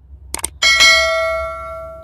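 Subscribe-button sound effect: a couple of quick mouse clicks, then a bright notification bell ding that rings on and fades over about a second and a half.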